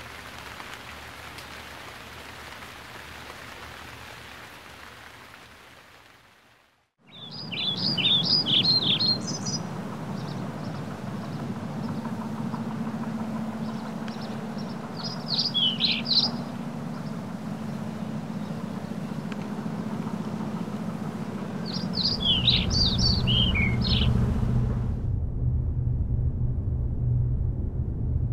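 A steady hiss fades away to silence. Then small birds chirp in three short bursts of quick, high notes, over a steady background hiss and hum. A low rumble comes in near the end.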